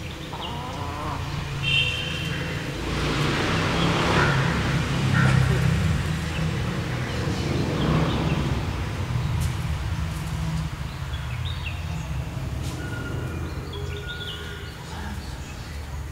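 Outdoor beach ambience: a steady low rumble with a long rushing swell a few seconds in and another around eight seconds, and short high bird calls scattered through.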